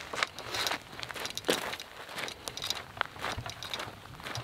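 Footsteps on dry dirt as a person walks briskly, a series of irregular short scuffs and crunches.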